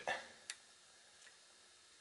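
Quiet room hiss with one sharp click about half a second in and a much fainter tick later.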